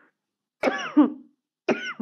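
A woman coughing: a short voiced cough with two peaks about half a second in, then another cough near the end that runs straight into her speech.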